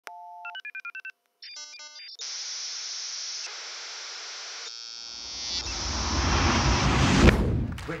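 Electronic logo sting: a steady test-like tone and a few quick electronic beeps, then a steady TV-static hiss. A deep rumble builds louder under the hiss to a sharp hit about seven seconds in, then cuts off.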